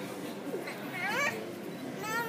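A young child's short, high-pitched, rising cry, cat-like in tone, about a second in, over a murmur of background voices.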